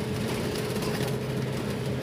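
Steady engine hum and running noise of a bus, heard from inside its crowded passenger cabin.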